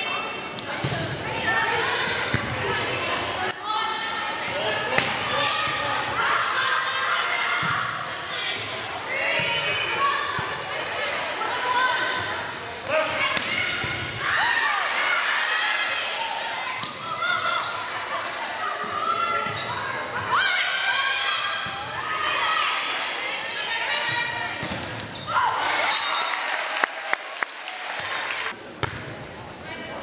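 Indoor volleyball rallies echoing in a gym: the ball is struck now and then with sharp smacks, over near-constant shouts and calls from players and spectators.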